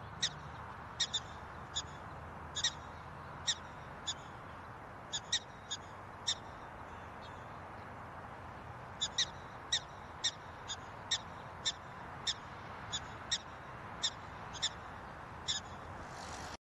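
Prairie dog giving a series of short, sharp barks, about one or two a second, with a pause of a couple of seconds in the middle, over a steady background hiss.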